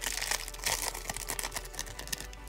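Foil wrapper of a Panini Optic Donruss trading-card pack crinkling as it is handled, a dense run of irregular small crackles.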